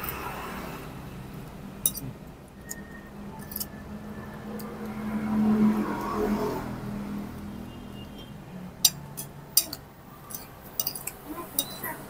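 Scattered light clinks of a metal spoon against ceramic plates, over steady background traffic that swells briefly around the middle.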